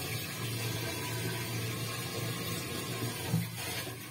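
Water running from a kitchen tap in a steady rush, briefly interrupted about three and a half seconds in.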